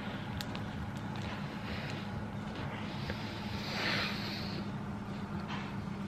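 Quiet chewing of a crispy chocolate bar, with a few faint crunches in the first half-second, over a steady low hum. A soft rushing swell of noise rises and fades about four seconds in.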